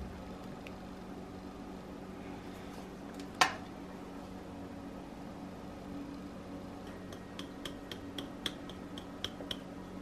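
Steady low room hum with a single sharp click about three and a half seconds in, then a run of light taps as a bottle of barbeque seasoning is shaken over a plate of scrambled eggs.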